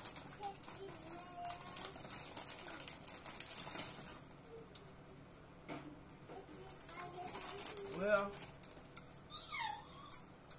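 Crunching and chewing of a crisp lemon ginger snap cookie, with dense crackles for the first few seconds that thin out after that. A couple of short hums come near the end.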